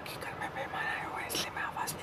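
A man talking softly in a near-whisper, close to the microphone, with a few sharp hissing consonants.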